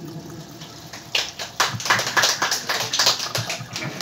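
Small audience clapping by hand, starting about a second in and dying away near the end.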